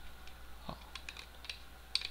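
Light plastic clicks and taps from a 3D-printed case lid being pressed onto its base, with a sharper click near the end as the snap catch meets resistance.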